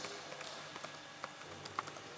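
Room tone in a pause between words, with a few faint, scattered clicks and taps.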